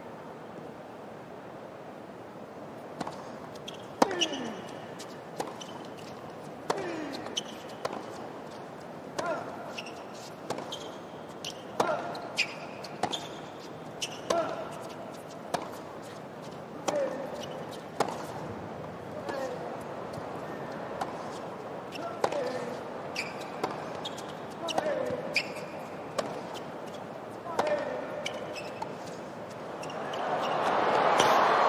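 Tennis ball being struck back and forth in a long rally on a hard court: a sharp racquet pop every one to two seconds, many shots with a short grunt from the player hitting.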